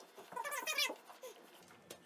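A short, high-pitched, wavering whine from an animal, about half a second long, followed by a single sharp click near the end.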